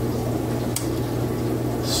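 Aquarium pumps and filters running: a steady low electric hum with bubbling, trickling water, and one faint click a little under a second in.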